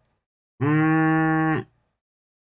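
A man's voice holding one drawn-out vowel at a steady pitch for about a second, a hesitation filler mid-sentence.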